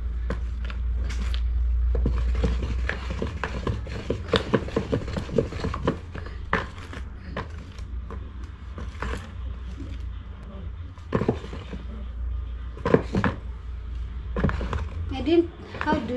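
Wooden stirring stick knocking and scraping irregularly against the sides of a plastic basin as a thick liquid detergent mix is stirred, over a steady low hum.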